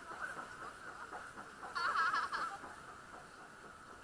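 A person's high-pitched, wavering laugh about two seconds in, with softer giggles around it.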